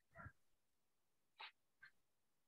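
Near silence: room tone, with three faint short sounds, one near the start and two in the second half.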